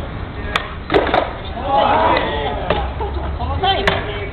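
Skateboard clacking on a hard court surface as a trick is done: three sharp clacks of the board within the first second or so, then single clacks near three seconds and near the end.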